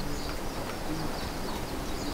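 A pause between sentences: steady room noise with faint, repeated high chirps and a few soft low coo-like notes, like birds calling outside.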